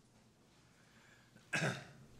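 A person coughs once, a short, sharp cough about one and a half seconds in, over faint room tone.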